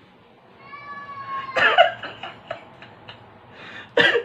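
A cat meowing: one drawn-out call that falls slightly in pitch, ending in a louder, rougher burst of cry about a second and a half in. A few faint clicks follow.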